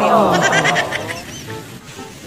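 A comic sound effect edited into the audio: a loud falling tone with a rapid rattle, lasting about a second, over the end of a short spoken phrase.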